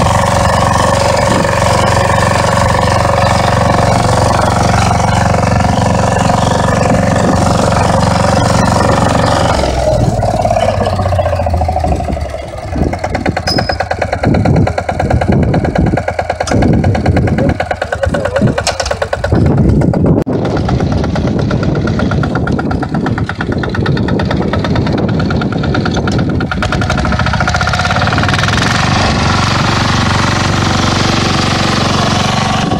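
Mini walk-behind tiller's engine running steadily while the machine pulls a plough. About ten seconds in it drops to a lower, uneven idle for several seconds, then settles back into a steady run.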